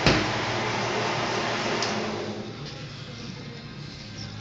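A stainless steel pan set down on a counter with a single sharp clank, over the steady whir and low hum of a food shredder's motor, which fades out a little past halfway as the machine runs down.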